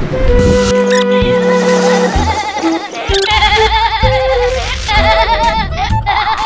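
Music: a few held notes, then a wavering melody line with heavy vibrato from about three seconds in.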